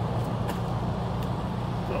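Steady low rumble of vehicle engines, with a couple of faint clicks.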